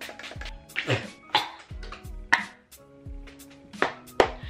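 Several short hisses of a pump-action makeup setting spray being misted onto the face, over background music with a steady beat.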